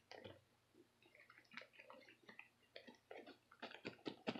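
Faint, scattered clicks and crinkles of a plastic ziplock milk bag being handled, coming thicker near the end.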